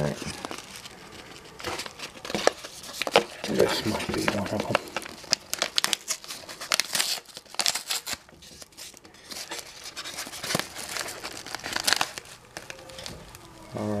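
A paper mail envelope being torn open and handled: irregular crinkling, rustling and tearing with sharp crackles.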